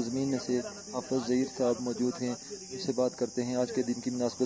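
A man speaking, over a steady high hiss.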